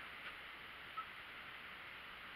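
Quiet room with a steady faint hiss, broken once about halfway through by a faint short blip.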